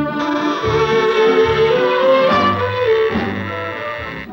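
Orchestral cartoon soundtrack music led by brass, playing held chords while a melody line steps upward and then falls back.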